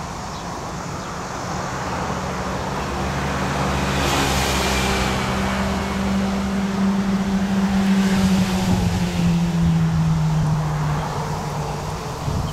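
Approaching CT273 steam locomotive, a C57 type, and its train running, the sound growing louder throughout. A steady low hum dips in pitch about nine seconds in, with two brief hissy swells partway through.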